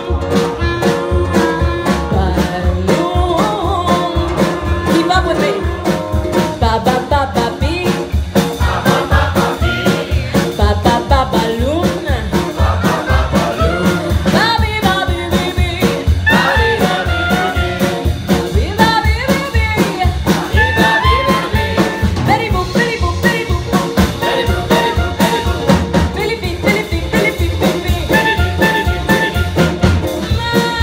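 Live band playing a swing-style tune: clarinet, ukulele, upright double bass and drum kit, over a steady beat.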